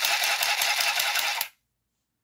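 Handheld mini sewing machine stitching lace onto card: a rapid, even clatter of stitches for about a second and a half, then it stops.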